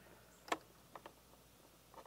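Boat dashboard switches clicking as they are flipped: one sharp click about half a second in, then two fainter clicks about a second in, over a quiet background.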